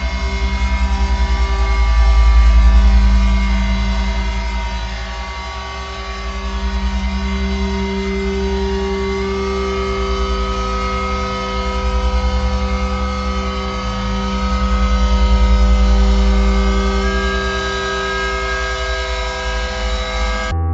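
Experimental electronic drone music: many held tones layered over a deep, rumbling bass that swells twice and eases off, with one higher tone entering about halfway through.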